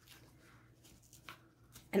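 Faint rustling of a stiff felt sheet being worked by hand as die-cut leaf shapes are popped out of it, with a few soft ticks, the clearest about a second and a quarter in.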